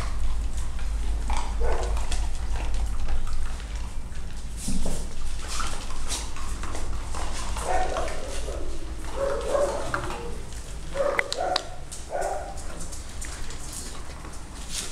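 Several dogs eating from metal feeding bowls on a tiled floor, with sharp clinks of the bowls, while a dog barks a number of times in the second half.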